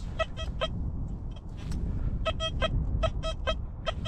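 XP Deus 2 metal detector sounding short beeps at one steady pitch as the coil sweeps over a target: a few at the start, then a longer run in the second half. It is a tone the detectorist judges not very promising. A steady low rumble of wind on the microphone runs underneath.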